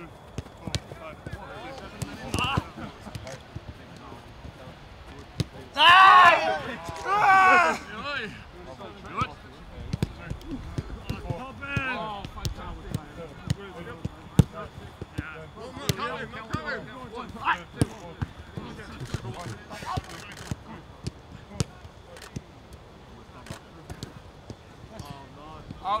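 A football being kicked and passed on a grass pitch: repeated short, sharp thuds of boot on ball. About six seconds in come two loud shouts, the loudest sounds here, with fainter calls from players later on.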